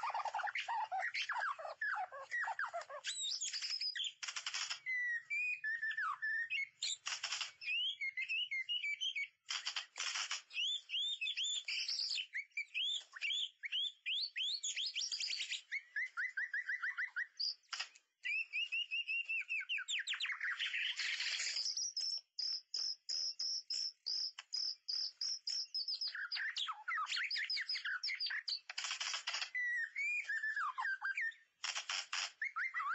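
White-rumped shama singing without a break: a long, varied string of rich whistles, fast trills and rising and falling phrases, interrupted now and then by short harsh bursts.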